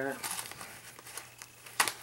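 Rustling and crinkling as a leather wallet stuffed with papers and receipts is handled and opened, with one sharp click near the end.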